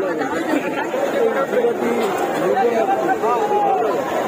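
Crowd chatter: several people talking at once, overlapping voices with no single clear speaker.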